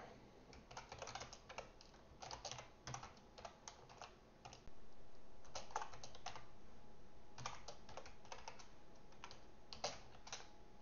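Computer keyboard typing: irregular runs of quick key clicks. A steady background noise comes up about halfway through.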